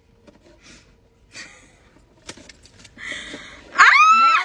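Mostly quiet, with faint handling noises and a soft click, then a breathy hiss in the last second and a woman's high-pitched squeal that starts just before the end.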